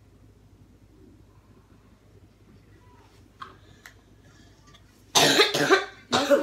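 Quiet room with a couple of faint clicks, then near the end a loud, harsh cough from a person in two quick bursts.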